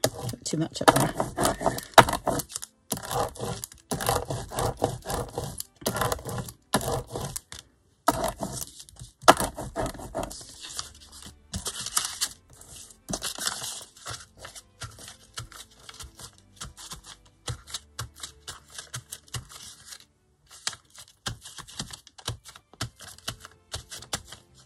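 Sheets of paper scrap being handled, shuffled and pressed flat on a cutting mat: crisp rustling and crinkling, dense in the first half, then sparser light taps and rustles.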